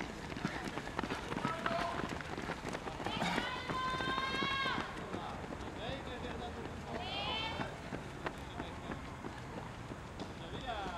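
Runners' footsteps striking the synthetic track as a pack goes by close. A high voice holds one long drawn-out shout about three seconds in, and a shorter shout falls in pitch about seven seconds in.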